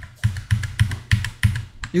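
Typing on a computer keyboard: an irregular run of about a dozen key clicks.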